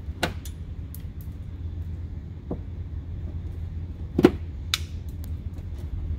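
Plastic fender-liner rivets being pried out with a flathead screwdriver: a few sharp clicks and snaps, the loudest about four seconds in, over a steady low hum.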